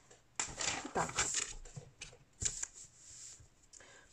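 A sheet of printed paper rustling as it is handled and laid flat on a table, with a short sharp rustle about two and a half seconds in.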